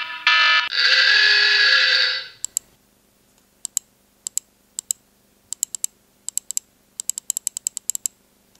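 An electronic countdown alarm: the last short beeps, then one long buzzer tone lasting about a second and a half, which marks the countdown reaching zero. Then sharp computer clicks from keys and mouse, singly, in pairs and in a quick flurry near the end.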